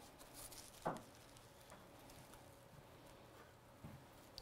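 Near silence with faint, soft dabbing of a crumpled tissue blotting puddles of wet ink off watercolour card, with one slightly louder dab about a second in.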